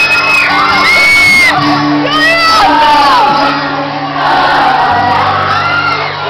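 Pop-rock band playing live in a concert hall, with held low notes under high-pitched crowd screaming and singing.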